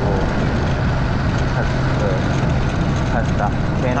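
Motorcycle riding along a street: a steady low engine hum under a wash of wind and road noise on the microphone.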